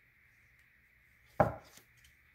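A sharp knock on the tabletop about one and a half seconds in, followed by a lighter tap.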